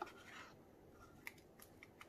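Near silence broken by a few faint, short ticks of a wooden stir stick scraping thick white resin out of a paper cup.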